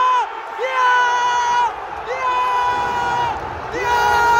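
A man close to the microphone screaming in long held yells, three of them, each about a second long and falling off at the end, over a cheering football stadium crowd celebrating an equalising goal.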